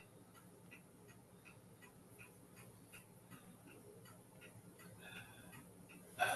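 Near silence with faint, regular ticking, about three ticks a second.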